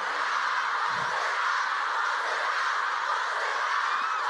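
A large concert crowd screaming and cheering steadily, a high-pitched wall of many voices with no music under it.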